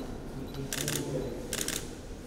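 Camera shutters firing in rapid bursts, in two short bursts about a second apart.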